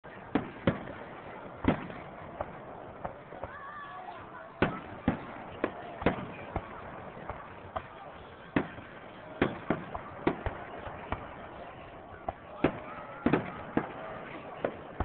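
Aerial firework shells bursting: over twenty sharp bangs at uneven intervals, some in quick pairs or runs of three.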